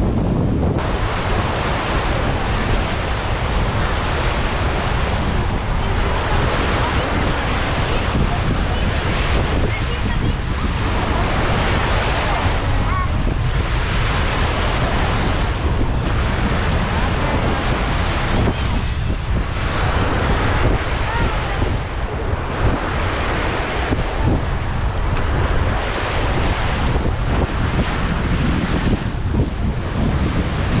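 Sea waves washing onto a beach, the surf hiss swelling and fading every few seconds, over heavy wind buffeting the microphone.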